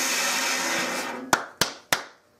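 Bandsaw running with no wood in the blade, fading away from about a second in. Three sharp knocks follow near the end.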